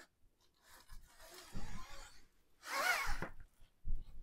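Sliding pizza peel's cloth belt rubbing and scraping as a pizza is slid off it onto an oven rack and the peel is drawn back out. About three seconds in there is a short, louder sound with a wavering pitch, followed by a brief knock near the end.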